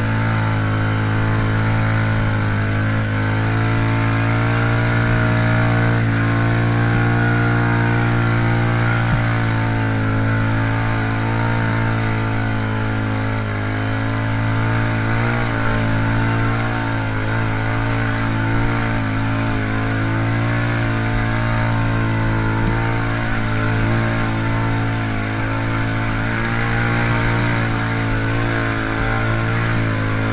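Can-Am Outlander XMR 650 ATV engine running under steady throttle, its revs held almost constant with small dips as the quad pushes through deep mud.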